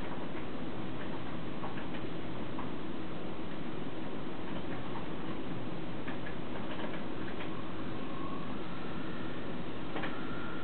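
Digital servos of an RC pan-and-tilt camera mount moving under a steady hiss: faint scattered ticks and brief whines, with a thin steady whine setting in near the end as the mount pans.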